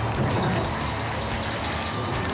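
Mercedes-Benz heavy-haulage truck's diesel engine idling steadily with its power take-off engaged, driving the trailer's hydraulics while the trailer is being widened.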